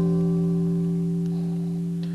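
Archtop hollow-body electric guitar letting its closing chord ring out, several notes held and slowly fading at the end of an instrumental hymn.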